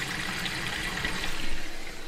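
Water running steadily into a giant rubber water balloon as it fills inside a plastic bin.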